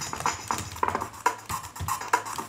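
Live-coded electronic music from Tidal: a sampled drum break chopped into sixteen pieces and re-patterned, every other cycle reversed, playing as a fast, stuttering run of clicky percussive hits.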